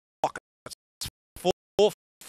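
A race caller's voice in short clipped bursts, about three a second, with dead silence between them.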